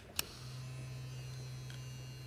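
A handheld vibrator switched on: a click, then its motor buzzing steadily at one low pitch.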